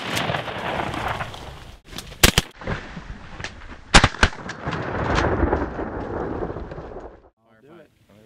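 Shotgun shots fired at Canada geese: a quick cluster of blasts about two seconds in and two more at about four seconds, over steady background noise. The sound cuts off suddenly shortly before the end.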